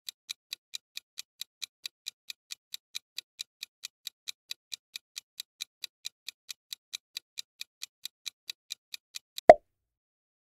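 Countdown timer sound effect ticking evenly, about four to five ticks a second. Near the end it stops, and a single short, much louder pitched sound effect marks time up as the answer is revealed.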